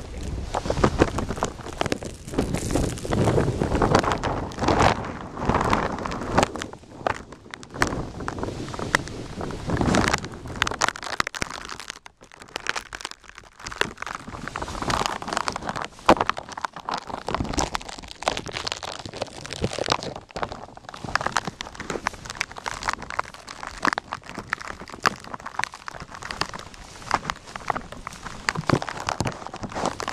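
Plastic bag wrapped over a camcorder crinkling and rustling against the microphone as it moves, mixed with gusting wind buffeting the mic. The crackle is irregular and loud throughout, easing briefly about twelve seconds in.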